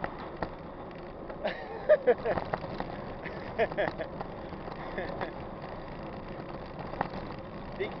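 Mountain bike ridden over a dirt road: a steady rush of tyre and wind noise with scattered clicks and rattles from the bike. A few brief snatches of voices come through.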